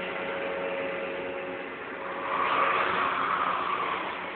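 Fairground ride running with its car in motion: a steady mechanical whir and hiss that swells for about a second and a half past the middle.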